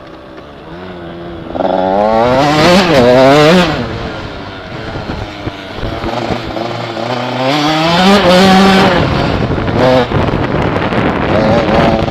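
Small off-road enduro motorcycle engine under hard riding. It starts quiet off the throttle, opens up about a second and a half in with a rising pitch, and eases off around four seconds. It then climbs again to a second peak near eight seconds, with a shorter rise near the end.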